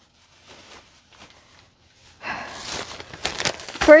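Thin plastic shopping bag rustling and crinkling as it is grabbed and pulled open, starting about two seconds in after a quiet stretch of faint handling sounds.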